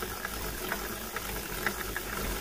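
Outdoor background sound: a steady low hum with faint, short high chirps repeating roughly twice a second.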